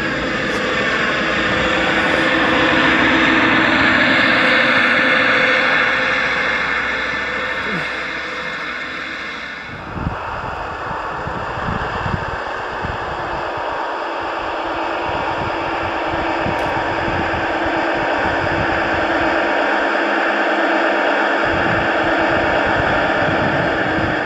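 Sound unit of a Gauge 1 model Class 66 diesel locomotive playing a steady diesel engine note through its speaker as it pushes a snow plough. The engine note sweeps in pitch over the first few seconds, and the sound changes abruptly about ten seconds in.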